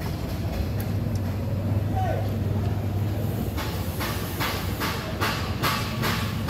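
Steady low hum, and from a little past halfway a regular run of short strokes, about two to three a second, as a large machete-like knife cuts tuna meat on a wooden chopping stump.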